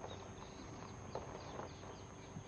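Faint outdoor background with scattered light clicks and a few short, high chirps.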